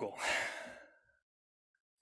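A man's breath, close on a microphone, fading out within the first second.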